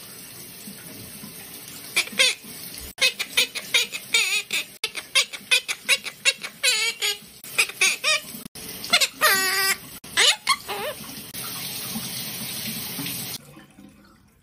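Monk parakeet chattering in a quick run of short squawks and gliding, pitched calls, over a steady hiss of running shower water. Near the end the calls stop, the water runs louder for a couple of seconds, then cuts off suddenly.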